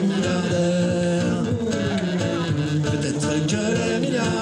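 Amplified live street music: a man's singing voice through a microphone over a steady musical accompaniment, both coming from a small portable PA speaker.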